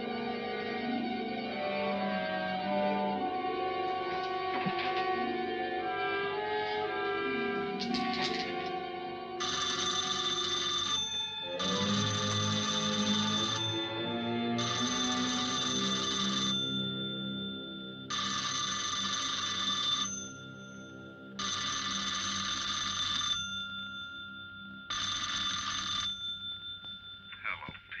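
Orchestral film score, then an old electric bell telephone ringing six times in long rings about a second apart over the fading music.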